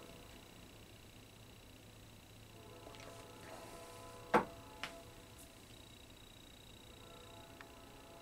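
A man sipping and swallowing stout from a glass, faintly, over a steady low room hum. A single sharp click comes about four seconds in, with a softer one half a second later.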